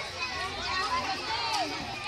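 Several children's voices talking and calling out over one another, with no single clear speaker.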